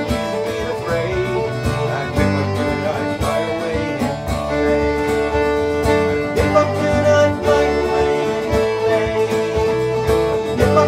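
Instrumental break of an English folk song played live: fiddle carrying the melody over strummed acoustic guitar and a second plucked string instrument, with no singing. The fiddle holds long notes in the second half.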